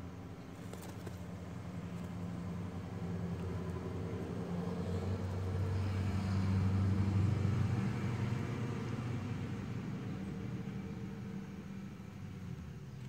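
Engine hum of a passing motor vehicle, growing louder to a peak about seven seconds in and then fading.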